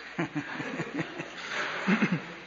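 Scattered soft chuckles and laughter from the listening audience, in short bursts that swell slightly near the end.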